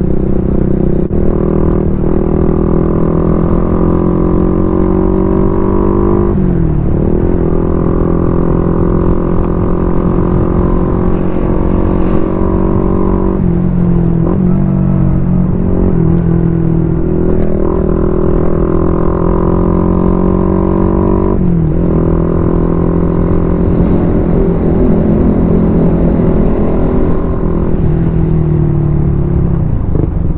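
Suzuki Raider Fi's single-cylinder four-stroke engine running under way at cruising speed, heard from the rider's position. The engine note holds steady, dipping briefly and picking up again three times.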